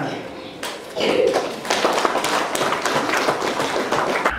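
Audience applauding, the clapping starting about a second in.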